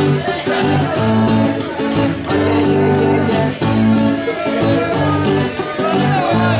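Live concert music: an instrumental passage with a steady beat under sustained pitched notes, without singing.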